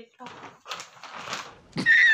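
A thin plastic shopping bag rustling and crinkling in irregular strokes as it is handled and opened. Near the end, loud laughter from a man starts suddenly, from an edited-in laughing meme clip.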